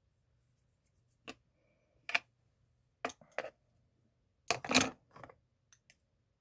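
Scattered sharp clicks and taps, about eight of them a second or so apart, the loudest a short cluster a little before the five-second mark, over a faint low hum.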